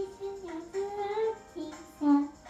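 A young girl singing, holding long notes that slide gently up and down.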